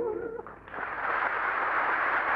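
Old opera recording: a held note with vibrato breaks off about half a second in, and after a brief drop a steady hiss of old-recording surface noise sets in.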